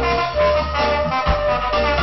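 Live reggae band playing an instrumental passage, a horn line holding the melody over bass and drums.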